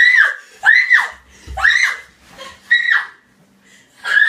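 A woman screaming in fright: four high-pitched shrieks, each about half a second long and about a second apart, with a low thump about one and a half seconds in.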